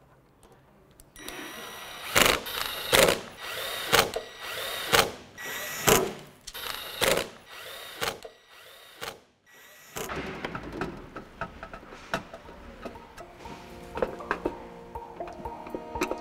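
Cordless drill-driver running in short, loud bursts about once a second, driving screws into a wine cooler's sheet-metal back panel; it stops after about nine seconds and background music follows.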